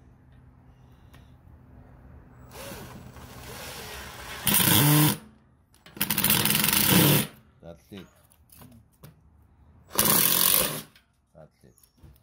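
Milwaukee cordless drill driving drywall screws through a steel leg base into a plywood table top. It starts slowly a few seconds in, then runs in three short loud bursts, each about a second long.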